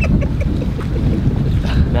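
Wind buffeting the microphone: a loud, uneven low rumble with no steady pitch.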